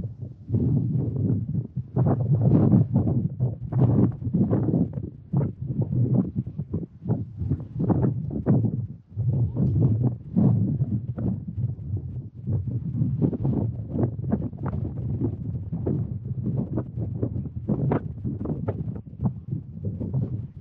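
Wind buffeting the camera microphone in irregular gusts, a loud, low, rumbling noise that rises and falls.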